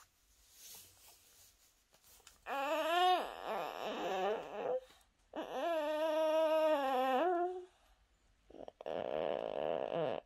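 A feverish toddler moaning in his sleep: two long, drawn-out groans of about two seconds each, the first wavering down in pitch and the second held level, followed by a short breathy noise near the end. The groaning is a sign of his high fever.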